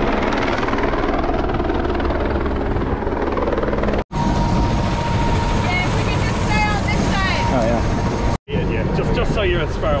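Helicopter close by: the rotor beating and turbine engine running steadily and loudly as it flies over and then sits on the ground with its rotors still turning, a steady whine audible in the middle part. The sound cuts out abruptly twice, briefly.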